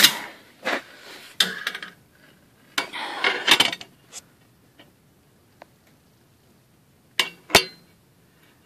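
Handling noise of hard objects: a few short clinks, knocks and a rattling clatter in the first half, then quiet, then two sharp clicks near the end.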